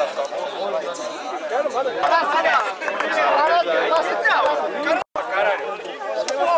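A group of people chattering, many voices overlapping at once, with a very brief dropout of the sound just after five seconds in.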